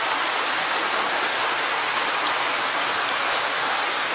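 Steady rush of running water in a koi holding tub.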